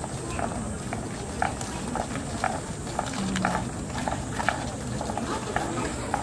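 Sandalled footsteps of a walking procession clacking on stone paving, about two steps a second, irregular, over a murmur of crowd voices.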